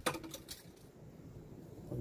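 A few light metallic clicks in the first half-second, the first the loudest, as a thermometer's metal probe and cable touch the kettle grill's steel grate, then only a faint low background.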